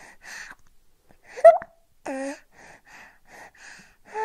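A baby feeding from a bottle: a string of short, breathy sucking and swallowing sounds, about three a second in the second half. About a second and a half in comes a brief rising squeak, the loudest sound, and shortly after it a short voiced hum.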